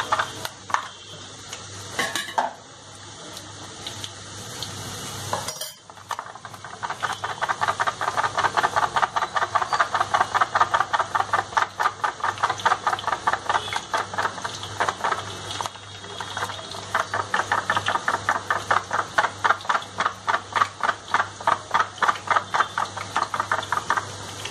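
Gram-flour batter shaken through a perforated foil container over hot oil, boondi sizzling as it fries. From a few seconds in, the shaking adds an even rhythm of short rattles and sizzle pulses, about three a second.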